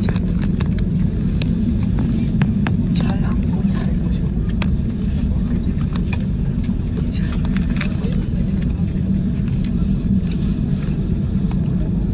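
Airbus A330 cabin noise while taxiing after landing: a steady low rumble from the engines and the rolling airframe, with scattered light clicks.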